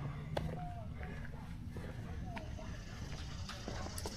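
Quiet outdoor residential street ambience: a low steady rumble, two short chirping bird calls, and a few faint clicks of footsteps on concrete.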